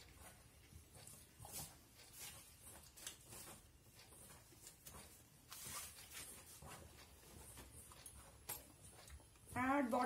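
Hands mixing flour and coconut oil in a steel bowl: faint, irregular scratchy rubbing and rustling. A woman starts speaking just before the end.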